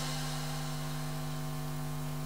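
Steady electrical mains hum, a constant low buzzing tone.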